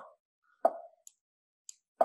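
Online chess board's move sound effect: a single short plop, announcing the opponent's move. Two faint clicks follow.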